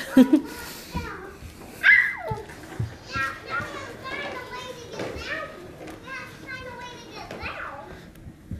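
Young children's voices: high calls and chatter of children at play, with a loud high-pitched call about two seconds in.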